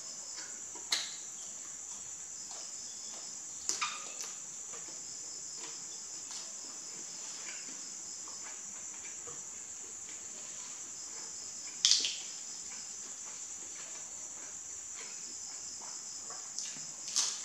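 Close-miked eating: a few short, sharp crunches and mouth clicks as a shrimp is bitten and chewed, about a second in, twice around four seconds, and loudest near twelve seconds. Under them runs a steady high-pitched background chirr.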